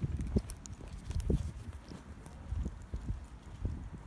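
Footsteps of a person walking on paving stones, heard as a steady series of dull low thumps at walking pace, with a few faint clicks.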